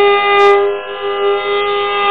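Carnatic classical music in raga Purvikalyani: one long note held steady at a single pitch.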